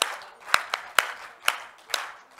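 Scattered, irregular hand claps from a few audience members in a reverberant hall, about six separate claps in two seconds rather than full applause.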